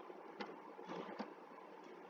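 Faint computer keyboard keystrokes: a handful of scattered clicks over a low steady hiss.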